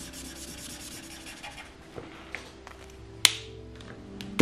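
Felt-tip marker scratching back and forth on paper while colouring in an area, with a single sharp click about three seconds in.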